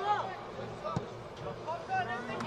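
A football kicked once: a single short thud about a second in, over faint shouts from the pitch.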